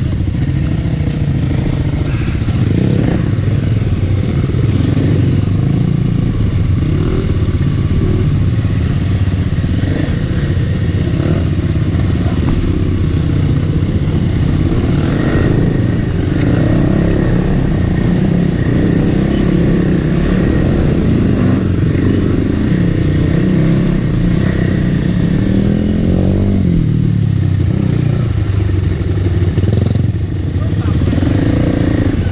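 Kawasaki KLX300R dirt bike's single-cylinder four-stroke engine running steadily at low trail speed, with the revs rising and falling a few times near the end.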